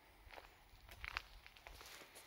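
Faint footsteps and scuffs on concrete: a few short, uneven steps.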